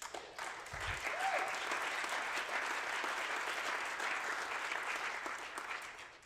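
Large audience applauding steadily, tapering off near the end.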